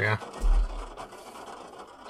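A man says a short "yeah", then a brief low rumble about half a second in, then a pause with faint hiss.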